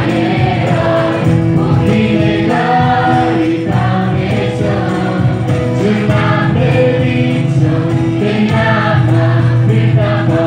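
A small group of mostly female voices sings a Nepali Christian worship song together, accompanied by acoustic guitar. The music is steady and continuous.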